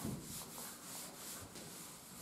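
Chalkboard being wiped with an eraser: faint rubbing strokes, about four a second.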